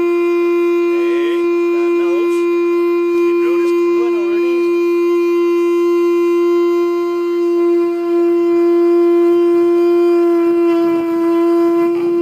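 Horn made from an alileng (top shell, trochus) being blown: one long, steady, loud note with a bright, brassy run of overtones, held without a break.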